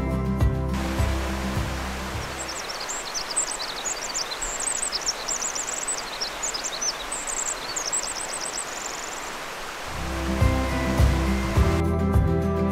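Pacific wren singing a long song of rapid, high notes that ends in a fast, even trill, over the steady rush of a creek. Background music is heard briefly at the start and comes back near the end.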